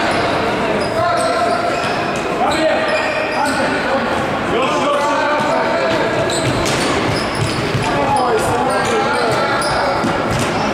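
Youth futsal match in a reverberant sports hall: players and spectators calling out and shouting, with the ball thudding off feet and the hardwood floor.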